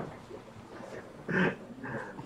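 Quiet room tone broken about one and a half seconds in by a single short, muffled vocal sound from a person.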